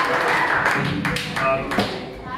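Several sharp taps and knocks on a stage, with a brief pitched sound in the second half.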